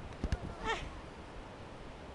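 A child's brief high squeal, falling in pitch, comes just after two quick knocks.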